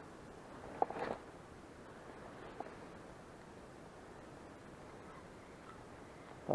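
Faint, steady outdoor ambience, with one short sharp sound about a second in and a tiny click a couple of seconds later.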